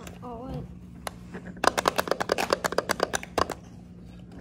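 Plastic snack packaging crackling as it is handled, in a quick run of sharp crinkles lasting about two seconds in the middle.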